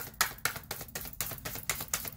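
A tarot deck shuffled by hand: a rapid, irregular run of light card clicks and flicks.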